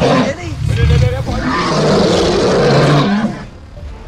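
A loud, long monster roar, the growling roar of a big beast, rising about half a second in and cutting away just after three seconds.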